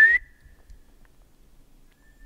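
A loud human whistle, rising in pitch, that cuts off a moment in. Near the end a faint, steady whistle begins. These are whistled signals between companions to find each other in the woods.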